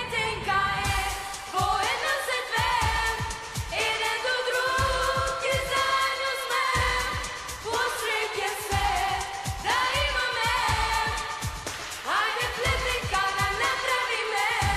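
Two girls singing a pop song over a backing track with a steady drum beat.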